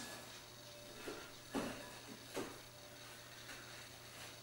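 Hands pressing and turning a meatloaf in a glass bowl of breadcrumbs, making a few faint, soft pats and rustles about a second apart. A low, steady hum sits underneath.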